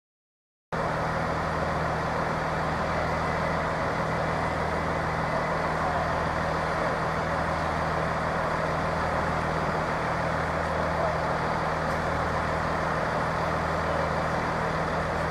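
Class 158 diesel multiple unit standing at the platform, its underfloor diesel engines idling with a steady low hum. The sound cuts out for under a second at the very start.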